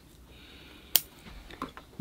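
A single sharp snip of bonsai scissors cutting through a crown of thorns (Euphorbia milii) branch about a second in, followed by a couple of faint clicks, over quiet room tone.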